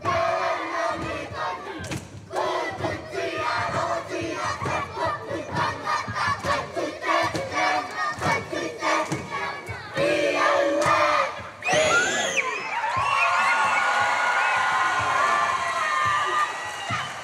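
A children's kapa haka group performing a haka: a rhythmic shouted chant punctuated by slaps and stamps. Near the end a rising shout gives way to high voices holding long notes together.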